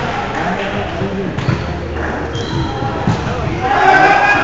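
Indoor volleyball play in a large gym hall: players' voices calling out, with the thuds of the ball being hit and passed.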